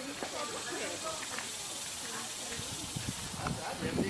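A steady high-pitched hiss, with faint voice-like sounds scattered over it.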